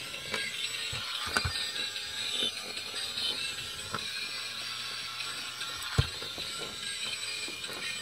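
Small battery-powered bump-and-go toy truck's motor and plastic gears running with a ratcheting whir as it drives itself around. A few clicks and knocks come through, the sharpest about six seconds in.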